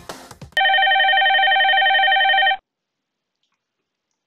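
X-Lite softphone's incoming-call ringtone: one steady electronic ring of about two seconds that stops abruptly.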